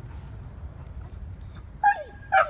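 Shepherd-mix dog whimpering: faint thin high whines about a second in, then a short, loud, high whine that falls in pitch near the end. The whimpering is his sign of anxiety at being too close to another dog, near his breaking point.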